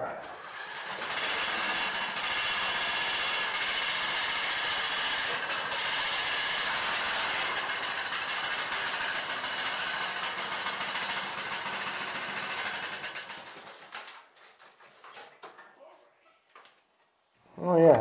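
Briggs & Stratton 15.5 hp engine on a riding mower starting up and running steadily for about thirteen seconds on fresh oil and a new fuel filter, then shut off and winding down, with a few faint clicks afterwards.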